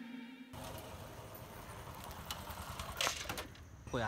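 The tail of a background music track, cut off about half a second in, then faint outdoor street background noise with a few short knocks.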